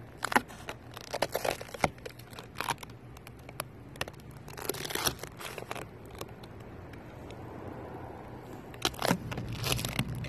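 Clear paint protection film (clear bra) being peeled off a car's painted door panel, crackling and crinkling in irregular bursts: three spells of rapid crackles, in the first few seconds, about five seconds in, and near the end.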